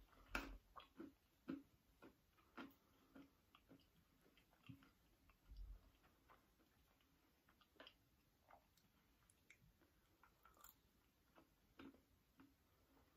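Near silence with faint, irregular clicks and crunches of a person chewing nuts.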